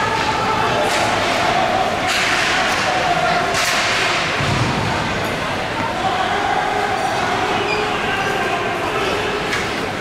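Ice hockey play: skate blades scraping the ice in short bursts, with a dull thump about four and a half seconds in, over voices calling out across the rink.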